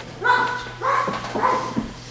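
A child imitating a dog, barking three times about half a second apart.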